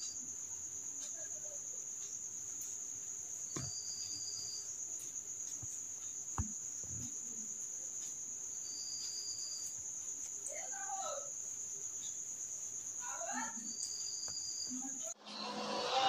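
A cricket's steady high-pitched trill over quiet room tone, with a few short higher chirps and a faint click in between. It cuts off suddenly near the end as music starts.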